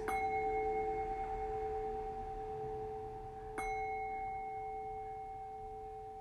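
Singing bowl struck with a padded mallet twice, at the start and again about three and a half seconds in, each time ringing on in one steady pure tone with a higher overtone that slowly fades.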